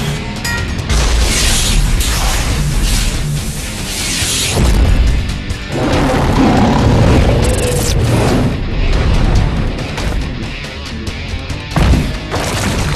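Loud dramatic action-cartoon score, with booming impact and burst sound effects of a monster fight mixed in.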